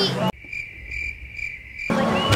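Cricket-chirping sound effect edited in for about a second and a half, with the live outdoor sound cut out abruptly around it: a steady high chirring with a faint repeating pulse, the stock gag for an awkward silence.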